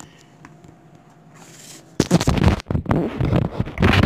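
Loud, irregular rubbing and rustling of a handheld camera being handled, with the microphone covered, starting about halfway through and lasting about two seconds.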